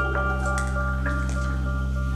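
Ambient modular synthesizer music: a steady low drone and held tones, with short sparse clicks scattered over them.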